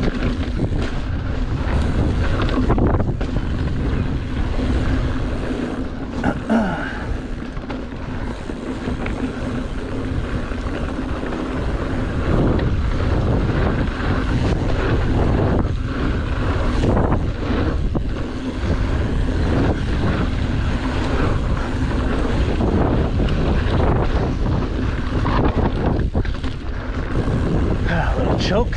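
Wind buffeting the microphone of a mountain bike camera, over the rumble of tyres rolling on a dirt single-track trail, with occasional short knocks from the bike going over bumps and a faint steady low hum underneath.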